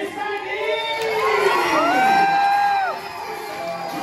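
Audience cheering and shouting, with one long, high shout about two seconds in that rises, holds and falls away.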